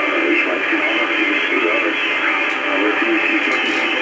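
HF radio reception from a FunCube Dongle software-defined receiver through an up-converter: a voice comes over the received signal, narrow and tinny, cut off above about 3.5 kHz, with a faint hiss.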